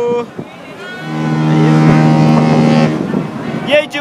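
Cruise ship's horn sounding one long, steady blast that starts about a second in, with a woman's voice briefly over it near the end.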